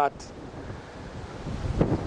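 Wind rushing over an outdoor microphone, a steady noisy hiss that grows a little louder toward the end.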